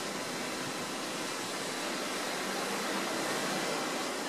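Steady outdoor background noise: an even, featureless hiss with no distinct events, the mixed air and traffic ambience of a city street.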